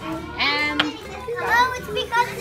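Children's voices: two short bursts of excited talk or exclamation, the first about half a second in and the second in the second half.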